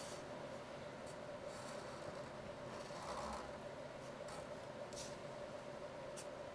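Felt-tip marker drawing on paper: a series of short, faint scratchy strokes, over a steady faint hum.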